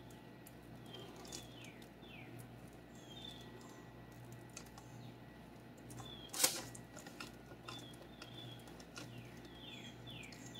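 Faint scraping and tapping of a silicone spatula spreading thick Alfredo sauce over a chicken pizza crust on parchment paper, with one sharper click about six and a half seconds in.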